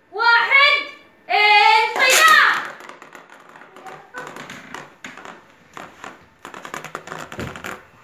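Children's voices calling out for the first two and a half seconds, then Beyblade spinning tops spinning and clattering in a plastic bowl: a fast, uneven run of light clicks and rattles as the tops knock against each other and the bowl's sides.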